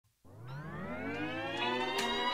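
A siren sound in the intro of a hip hop track: it starts about a quarter second in, grows louder, and glides upward in pitch, the rise slowing as it goes.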